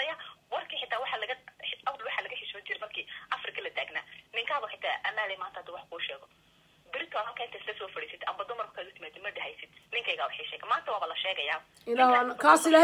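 A person talking over a telephone line in short phrases, the voice thin and narrow as through a phone, with a brief pause about six seconds in.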